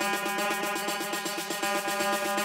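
Tech house DJ mix: a fast, even pulse of about nine strokes a second over held synth tones, with little deep bass.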